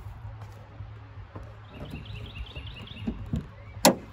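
A bird chirping a quick run of short high calls about halfway through, over a low steady hum, with a single sharp clack a little before the end.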